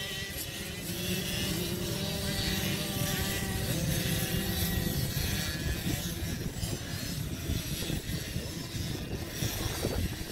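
Many off-road motorcycle engines running together, a steady low rumble with engine pitches rising and falling during the first half.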